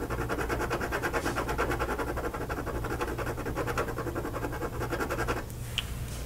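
Pencil shading on paper: a fast, even run of back-and-forth strokes of graphite on a worksheet, stopping about five and a half seconds in.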